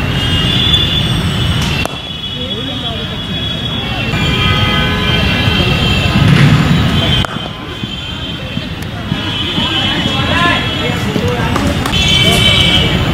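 Outdoor field ambience with voices of players and onlookers over background noise. It breaks off abruptly twice, once about two seconds in and again after about seven seconds.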